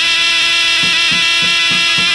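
Live Albanian folk dance music: one long, shrill held note from a wind instrument, with a large double-headed lodra drum joining about a second in, beating about three times a second.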